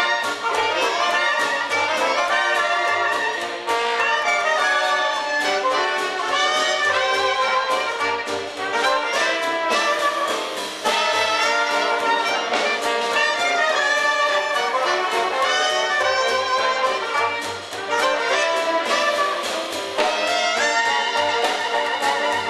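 Live traditional jazz band playing together: trumpets and saxophone carrying the melody over piano, double bass, drums and guitar, with a steady swinging beat.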